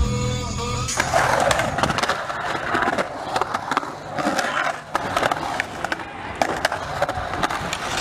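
Music cuts off about a second in, then skateboard wheels roll and carve across a concrete bowl, with scattered clicks and knocks from the board.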